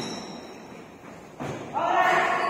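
A basketball thud echoing in a large gym about a second and a half in, followed near the end by a player's shout.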